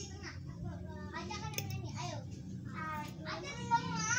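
Faint voices talking over a low steady hum.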